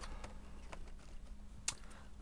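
Faint light clicks of a plastic-windowed cardboard toy box being handled, with one sharper tick near the end, over a steady low hum.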